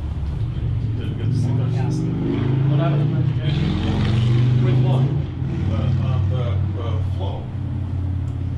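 A motor vehicle's engine running nearby, a low rumble that grows louder toward the middle and eases off near the end, with faint voices underneath.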